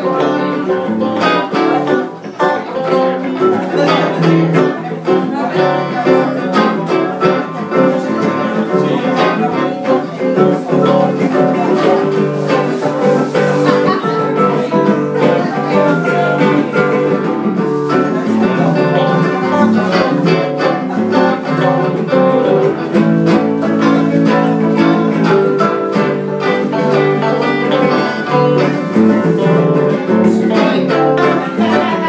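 A live band of electric guitars playing an instrumental passage together, steady and unbroken, with no singing.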